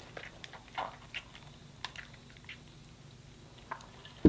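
Faint chewing of a mouthful of crispy fried food, with a few soft crunches and mouth clicks scattered through.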